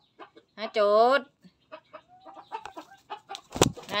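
Silkie rooster clucking low with soft clicks and scuffles, then a single sharp thump near the end as the rooster lunges at the person filming.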